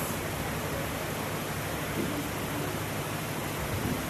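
Steady, even hiss of background noise with a faint low hum beneath it; no other sound stands out.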